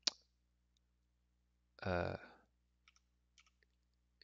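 Computer keyboard keystrokes while typing code: a single click at the start, then a few faint taps near the end.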